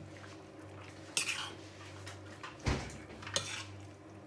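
Metal spoon stirring thick vegetable pakora batter in a ceramic bowl, knocking and clinking against the bowl three times: about a second in, near three seconds with a duller knock, and once more just after.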